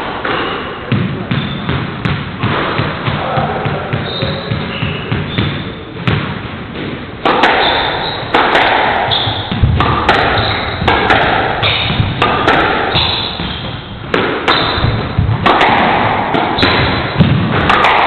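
Squash rally: the ball struck by rackets and hitting the walls in a quick run of sharp impacts, with short high squeaks from players' shoes on the wooden court floor.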